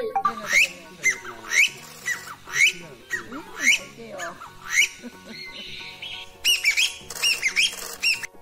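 Repeated sharp, rising calls of a game bird, a strong one about every second with softer ones between, then a quick run of calls near the end.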